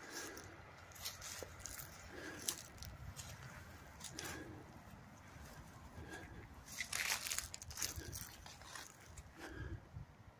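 Rustling and crackling of cut leafy branches and twigs, irregular, as someone moves through them, with a busier spell of crackling about seven seconds in. No chainsaw is running.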